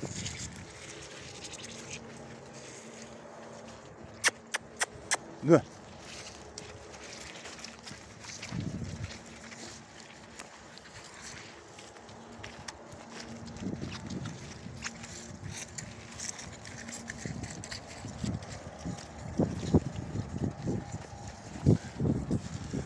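Horses walking about on soft, muddy ground, with scattered soft low hoof thuds. There is a quick run of four sharp clicks a little after four seconds in.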